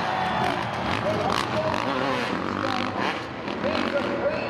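Several supercross motorcycles racing, their engines revving up and down over the jumps, with arena crowd noise behind.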